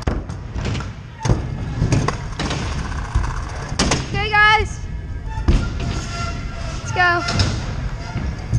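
Kick scooter riding over a concrete and wooden skatepark floor: a steady rolling rumble of the wheels with several sharp thuds as they hit ramp edges and joints. Two short shouted calls come in about four and seven seconds in.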